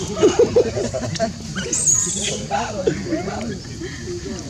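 A jumble of overlapping voices: short, bending squeaky calls and chatter, with a brief high whistle about halfway through.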